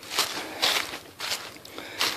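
Footsteps crunching through dry fallen leaves on a woodland floor, about four steady steps, roughly two a second.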